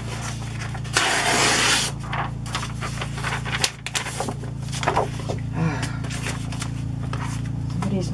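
Steady drone of a lawn mower engine running outdoors. Over it, sheets of paper are rustled and slid across a cutting mat, loudest in one sweep of almost a second about a second in.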